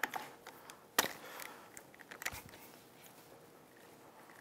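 Ratchet wrench and socket clicking and clinking as a spark plug is worked loose from an outboard's powerhead: a handful of irregular sharp clicks, the loudest about a second in.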